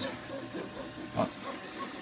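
Flashforge Dreamer 3D printer's stepper motors running as it prints, giving short, repeated high-pitched tones over a faint hiss. A brief louder sound comes about a second in.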